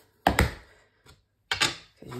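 Two clacks of plastic ink pad cases being handled and set down, a little over a second apart, with a faint tap between them.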